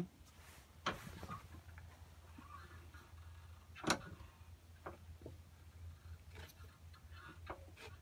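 Faint clicks and taps of small pen parts being handled and fitted together by hand, with one louder tap about four seconds in. A low steady hum runs underneath.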